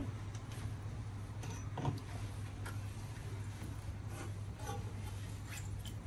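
Faint scattered clicks and light taps from handling a cucumber, a lemon and a large kitchen knife on a plastic cutting board, over a steady low hum.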